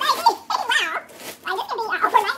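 A woman's high-pitched, wordless vocalising: a string of short excited squeals and exclamations whose pitch swoops up and down.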